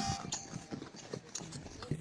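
A group of rescuers hauling hand over hand on a rope: the end of a shout at the start, then irregular scuffing footsteps and small knocks with faint voices.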